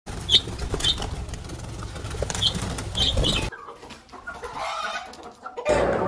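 Green parakeets flapping their wings in a fluttering rustle, with several short high calls. The sound stops suddenly about three and a half seconds in, leaving a much quieter stretch.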